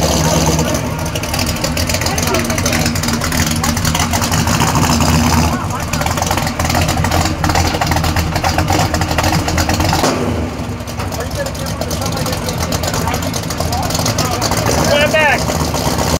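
A car engine running steadily with people talking around it; the sound changes abruptly about five and a half and ten seconds in.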